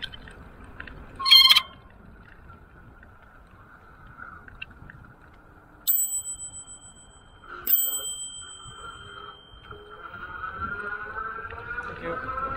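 A bicycle bell dings twice, each strike ringing on with a clear high tone, warning walkers ahead on the trail. About a second in there is a short, loud rattling burst, and a faint rising whine builds near the end over the steady rumble of tyres and wind.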